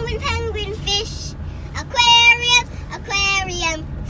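A young girl singing a simple repeated song of sea-animal names, such as 'penguin' and 'aquarium', in three short high-pitched phrases. A steady low hum of car road noise from inside the cabin lies underneath.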